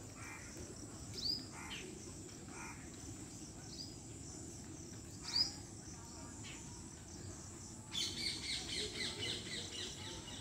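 Birds chirping: single short, downward-curving chirps every second or two, then a quick run of chirps near the end.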